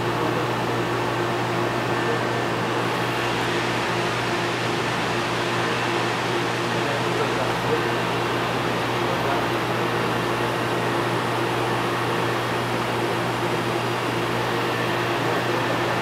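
Steady hum and hiss of aquarium equipment running: the pumps and water circulation of a saltwater holding system.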